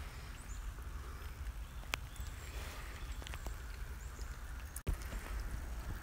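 Quiet outdoor background with a steady low rumble and a few scattered light clicks and taps, the sharpest about two seconds in.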